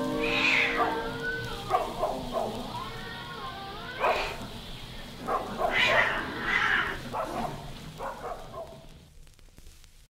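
Cats meowing and dogs barking in short scattered calls as the music dies away in the first second or so. Everything fades out near the end.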